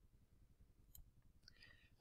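Near silence: room tone, with a single faint computer-mouse click about a second in.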